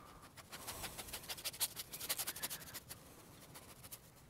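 Paintbrush scrubbing paint onto a stretched canvas: a faint run of quick, scratchy strokes, several a second, that stops about three seconds in.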